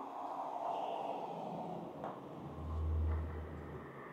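Faint car coming up the road below, a low hum that swells for about a second and a half past the middle.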